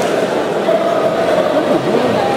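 Many voices at once echoing in a large sports hall: spectators and team members talking and shouting, with a few drawn-out calls.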